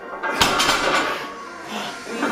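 A 162.5 kg barbell loaded with iron plates set down on a rubber-matted deadlift platform, with a single heavy thud about half a second in and a brief rattle of the plates after it. Background music plays underneath.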